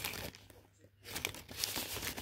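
Clear plastic bag crinkling as sheets of cardstock paper are handled inside a cardboard box, in irregular crackles that pause briefly and start again about a second in.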